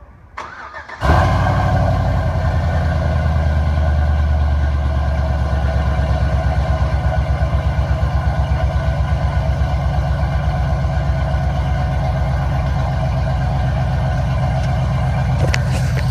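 Cold start of a 2003 Chevrolet Silverado breathing through long-tube headers, a Y-pipe with no catalytic converters and a Flowmaster Super 10 muffler. The starter turns briefly and the engine catches about a second in, then settles into a loud, steady idle with an even pulsing beat from the exhaust.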